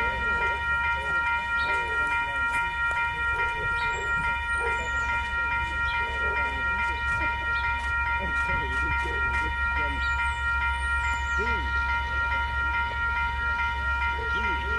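Steam locomotive pulling away slowly with its train, its exhaust beating low and regular. A steady high tone with overtones holds throughout, and crowd voices are heard.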